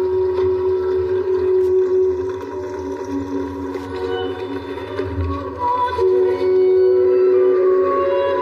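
Film soundtrack music of long, steady held tones, like a sustained wind drone, with a shift in the held notes about six seconds in.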